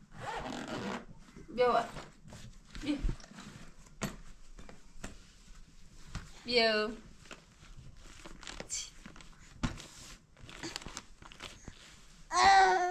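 Zipper on a child's backpack being pulled, a short rasp with clicks and rustling as the bag is handled. A young child makes two brief vocal sounds, one shortly after the start and one about halfway through.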